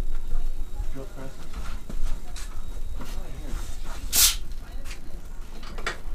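Indistinct low talk over a steady low rumble, with one short, sharp hiss about four seconds in.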